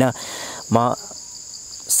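Insects chirring in a steady, high-pitched drone in the background during a pause in a man's talk, with a breath near the start and one short spoken syllable just under a second in.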